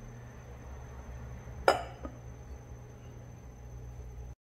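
A ceramic plate gives a single sharp clink about one and a half seconds in as it is handled, over a low steady hum.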